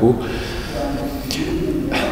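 A man's drawn-out hesitation hum between sentences, a held low voiced "mm".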